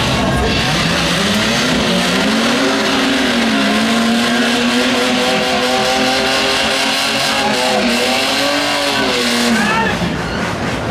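Drag-racing cars doing a burnout: engines held at high revs over the hiss and squeal of spinning rear tyres. The engine pitch climbs about a second in, wavers up and down for several seconds, then drops away just before the end.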